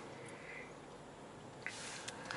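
Faint, even cabin noise of a 2018 Mercedes CLS rolling in slow motorway traffic, with a brief soft hiss near the end.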